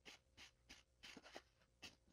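Faint, quick swishes of a tarot deck being shuffled by hand, about six strokes in two seconds.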